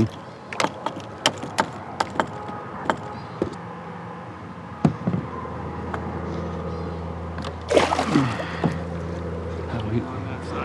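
A muskellunge thrashing in the water beside a plastic fishing kayak: a quick run of sharp splashes and knocks in the first few seconds, then quieter water. A short voice comes in about eight seconds in.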